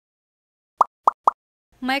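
Three quick pop sound effects about a quarter second apart, each a short blip falling in pitch, after a second of silence; a voice starts speaking near the end.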